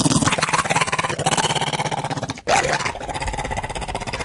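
A man's voice growling in a deep, gravelly, monster-like way, in two long stretches with a short break about two and a half seconds in.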